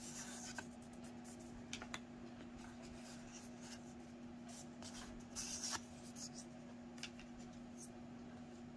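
Tarot cards handled and slid over one another in the hands: faint rubbing and soft clicks, the clearest cluster about five and a half seconds in, over a faint steady hum.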